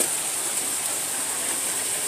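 Steady sizzling hiss of stovetop cooking: chicken deep-frying in hot grease, with a pot of corn on the cob boiling beside it.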